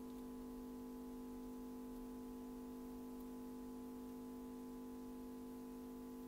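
Kaleep 948Q screen separator's vacuum suction pump running with a steady, unchanging hum while it holds the watch screen down on the heat plate.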